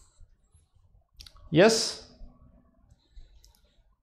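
A man's voice saying a single drawn-out "yes" with rising pitch, with a few faint clicks before and after it.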